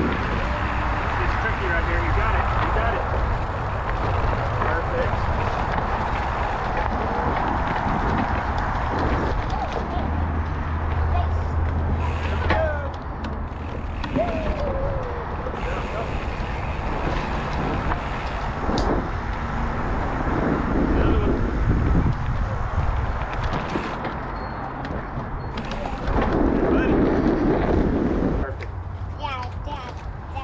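Mountain bike rolling fast over a dirt singletrack trail, with steady wind rushing on a helmet-mounted camera's microphone and scattered knocks and rattles from bumps in the trail.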